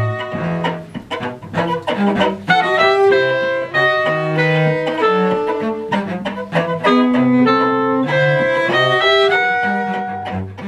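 A string ensemble of violin, viola and cello playing a contemporary chamber piece live. Short bowed notes change pitch every half second or so above low held cello notes.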